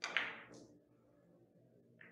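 Carom billiards shot: a sharp click of the cue striking the cue ball, then a second ball click about half a second later as the balls collide.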